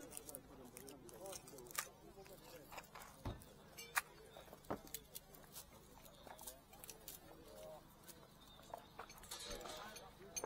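Faint background chatter of people talking, with several sharp clicks and a low knock about three seconds in from small boxes and trinkets being handled on a stall table.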